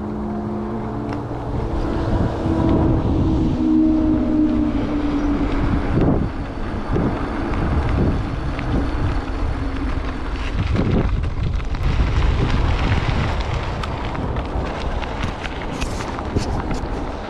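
Wind buffeting a bicycle-carried camera's microphone while riding, over the rumble of the tyres rolling on a dirt and gravel path, uneven in level, with scattered gravel crunches and knocks that are thickest near the end.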